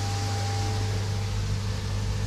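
Steady low electrical hum of koi pond filtration equipment running in the filter house, with a faint higher tone that stops shortly after the start.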